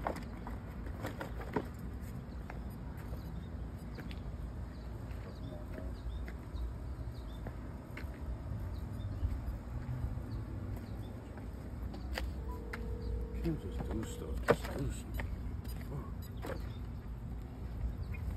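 Steady low outdoor rumble with scattered small clicks and knocks from gear being handled, a steady beep-like tone lasting about two seconds a little past halfway, and a sharp knock just after it.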